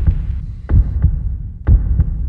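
Deep throbbing pulse over a low sustained hum, a heavy thump about once a second like a heartbeat, as the intro of a rock track begins.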